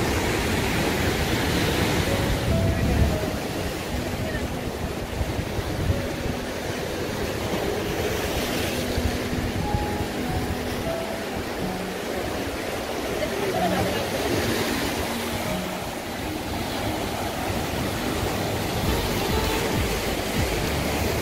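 Ocean surf washing over a black lava-rock shoreline, a steady rushing noise that swells with incoming waves about 2, 8 and 15 seconds in.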